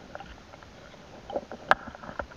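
Muffled water movement and faint scraping heard through a submerged camera as a fishing net is moved over the riverbed, with one sharp click or knock near the end.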